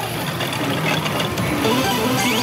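Pachislot hall din: music and electronic effects from the machines, including the Bakemonogatari pachislot being played, running steadily with no clear pauses.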